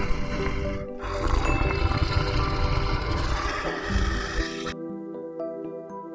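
Lion roaring over background music: a short roar at the start, then a longer one of nearly four seconds that cuts off just before the end.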